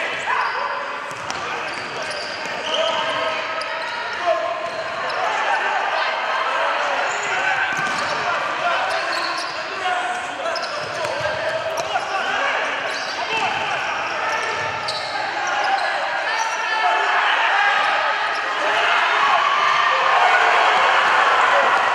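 Live game sound of a futsal match in an echoing sports hall: crowd and player voices throughout, with the occasional thud of the ball being kicked on the hard court.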